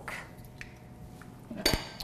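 Utensils stirring faintly in stainless steel fondue pots, then a single sharp metallic clink with a short ring about one and a half seconds in, as metal strikes the side of a pot.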